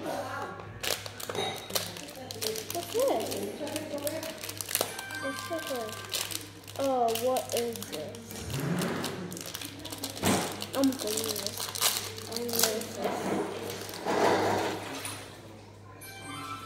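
Indistinct voices with many sharp clicks and rustles, over a constant low electrical hum.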